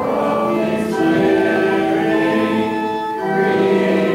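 Congregation singing a hymn in long held notes that change every second or so.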